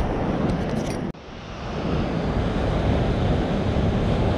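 Wind rumbling on the camera microphone over the hiss of beach surf. The noise cuts out suddenly about a second in and then swells back up.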